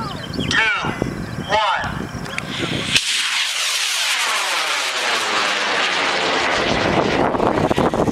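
High-power model rocket on an Accelerated Motion L730 motor lifting off: about three seconds in, a sudden loud rushing noise starts and holds steady to the end. The motor's sound sweeps downward in pitch as the rocket climbs away.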